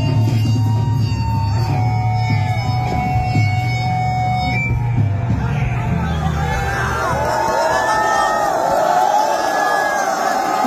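Live rock band playing, an electric guitar holding sustained lead notes over the bass. About three-quarters of the way through, the bass drops out and a crowd cheers and whoops.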